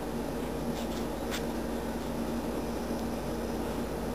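Steady low hum with a hiss of background noise, and two or three faint clicks about a second in.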